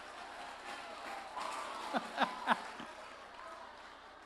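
Audience applauding in a hall, with a few short vocal calls about halfway through.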